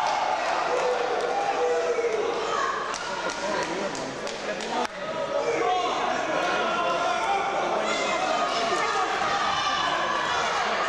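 Many indistinct voices of a seated audience chattering in a large hall, with a run of sharp knocks a few seconds in.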